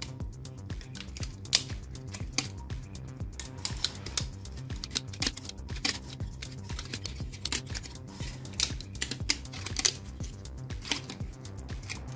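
Enamelled copper magnet wire being wound by hand into the slots of a power-tool armature, making irregular rapid ticks and scratches as it is pulled through and rubs the paper slot insulation, over soft background music.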